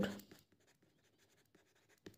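Faint scratching of a pen writing a word, just after a woman's spoken word ends.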